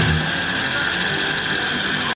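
Mini 4WD car's small electric motor and gears whining steadily as it runs on a plastic track. The tail of background music cuts off just after the start.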